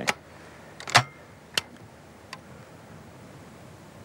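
Break-action shotgun being handled and loaded: a few short metallic clicks, the loudest about a second in, typical of cartridges going into the chambers and the breech being closed.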